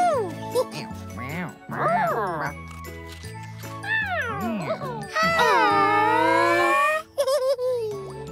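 Cartoon cats meowing several times over light, jingly children's music. The last meow is long and falls in pitch.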